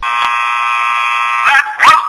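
A steady, buzzing electronic tone that holds one pitch for about a second and a half, then breaks off as a voice comes in near the end.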